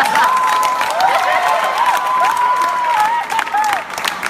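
Audience applauding and cheering, with long wavering calls and hoots carried over dense clapping; the calls die away near the end.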